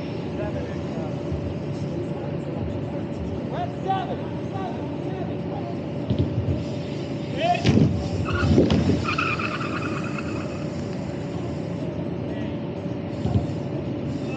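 A BMX bike rolls down an airbag lander's ramp close by, about eight seconds in, giving a short stretch of louder tyre noise over a steady hum.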